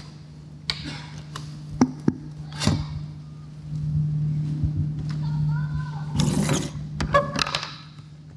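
Handling noise from a handheld microphone and equipment being moved: a few sharp knocks and rustles over a steady low hum.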